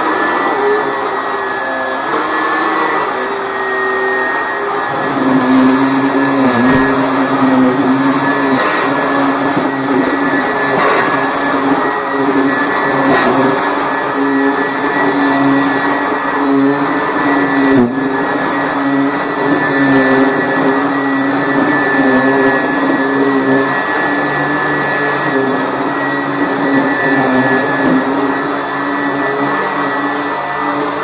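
Sanitaire SC886E commercial upright vacuum running steadily as it is pushed back and forth over a rug, with a steady high motor whine. Its brush roll has bristle strips fitted in place of the beater bars. A firmer low hum sets in about five seconds in.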